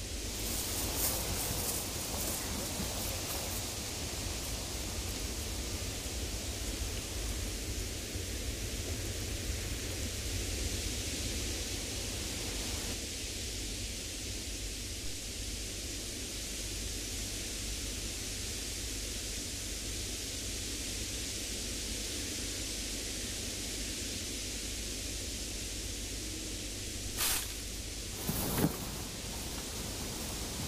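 Steady hiss of a camera trap's night-time field recording, with no clear calls. Two brief sharp snaps or knocks come near the end, about a second and a half apart.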